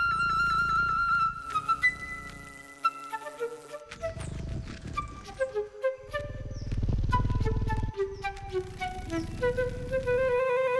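Background music led by a flute, playing held notes with vibrato and then a melody that steps downward, with a low hum underneath at times.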